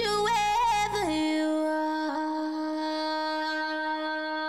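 Music: a wavering melodic line over a bass beat, then about a second in the bass drops out and a single note is held steadily.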